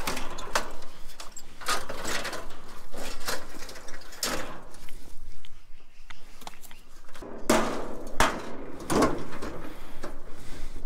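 Repeated metal clanks and rattles from a gas barbecue grill being taken apart by hand, its sheet-metal housing and burner parts knocking together. Three louder bangs come near the end.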